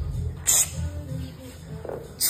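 A weightlifter's sharp, forceful breath about half a second in and a low grunt starting near the end, over gym music with a heavy bass beat.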